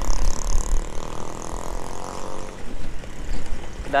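Motorcycle engine running at low speed, with wind rumbling on the microphone. A humming engine note fades out a little under three seconds in.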